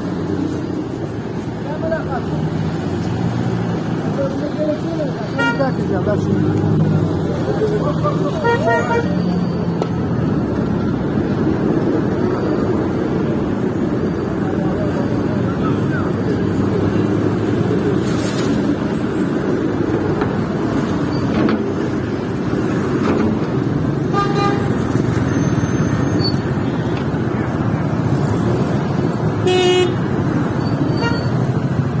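Busy city street traffic: cars idling and moving slowly, with several short car horn toots spread through it and the voices of people nearby.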